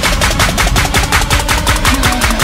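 A rapid, even run of sharp percussive hits, about ten a second, in an electronic dance track, over a low bass line and sustained synth tones.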